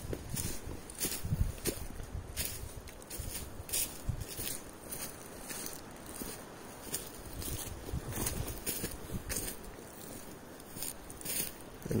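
Footsteps walking through dry leaf litter, the leaves rustling underfoot with each step in an uneven rhythm.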